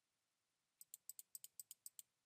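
Computer mouse button clicked rapidly about ten times, a run of faint, evenly spaced clicks starting just under a second in, stepping a spinner arrow in PowerPoint's Shape Width box.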